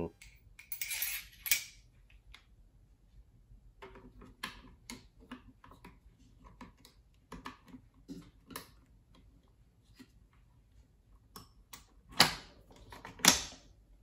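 SKS rifle's steel gas tube and wooden handguard being handled: a short metal scrape, then a run of separate sharp clicks as the gas-tube lock lever by the rear sight is worked, and two louder metallic clanks near the end as the assembly is slid into place.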